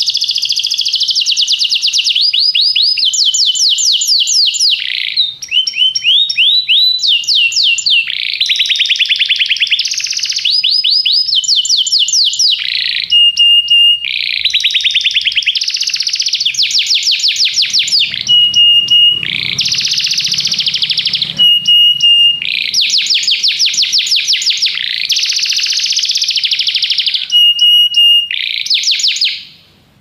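Domestic canary singing a continuous song of fast trills and rolls of rapidly repeated notes, broken every few seconds by short, steady whistled notes; the song fades out at the very end.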